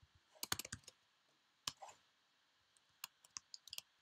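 Quiet computer keyboard typing and clicks in three short bursts: a quick run of clicks about half a second in, a couple near two seconds, and another run in the last second.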